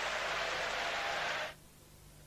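Steady stadium crowd noise as carried on a TV football broadcast, an even wash of noise that cuts off suddenly about one and a half seconds in, leaving near silence.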